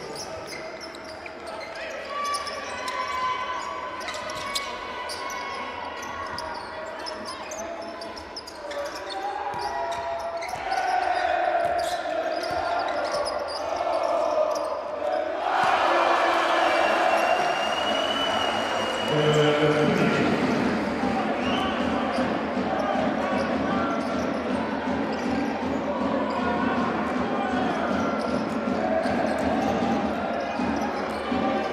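Court sound of a women's basketball game in an arena: the ball bouncing on the hardwood under a steady noise of crowd voices. About halfway through the crowd noise rises suddenly and stays louder, around a home basket.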